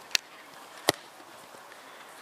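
Two sharp knocks, the first just after the start and the second about three-quarters of a second later, over a faint steady background.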